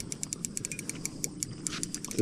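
Spinning reel clicking rapidly and evenly, a fast ratchet-like run of small clicks while a hooked catfish is played on a bent rod.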